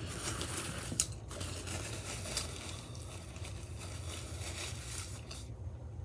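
Quiet chewing of a soft pita gyro mixed with the crinkling and rustling of paper being handled, with a couple of brief clicks about one and two and a half seconds in.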